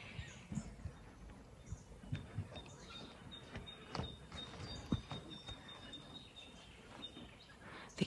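Quiet outdoor bush ambience with a few faint scattered knocks and a thin, steady high whistle that starts about three seconds in and stops near the end.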